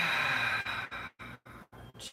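A man's deep exhale out through the open mouth, a breathy release that fades away within the first second.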